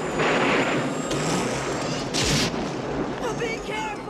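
Movie sound effects of a lightning strike in a thunderstorm: a rushing swell of storm noise, then a sharp, loud thunderclap crack about two seconds in as the bolt hits the DeLorean time machine.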